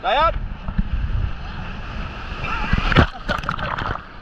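Surf washing and churning around a camera held low in the shallows, with wind rumbling on the microphone. A short shriek sliding down in pitch comes right at the start, and excited voices with laughter and a sharp slap, loudest about three seconds in, fill the last second and a half.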